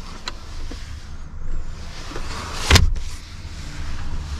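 Rear seat of a car being handled by hand. One sharp thump comes a little under three seconds in, with a softer click near the start, over a low steady hum in the cabin.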